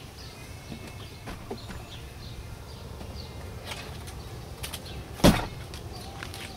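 Steady low outdoor background with a few faint clicks, and one sharp, loud thump about five seconds in.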